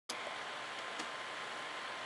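Steady low hiss of the guitar recording's noise floor before any playing, with a faint steady tone and two faint clicks.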